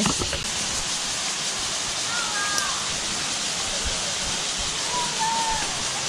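Steady rushing of a creek and waterfall.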